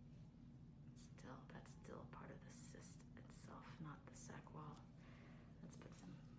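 Very faint whispered speech, beginning about a second in, over a low steady hum.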